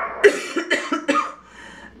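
A woman coughing, a quick run of about four harsh coughs into her fist in the first second and a half: the lingering cough of a cold that is clearing up.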